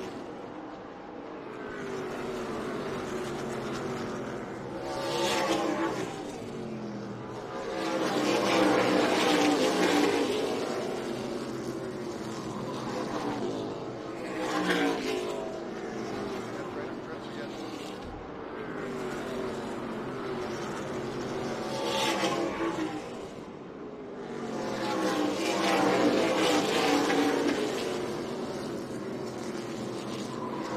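A pack of NASCAR K&N Pro Series stock cars running at race speed, their V8 engines rising and falling again and again as the cars come past and pull away.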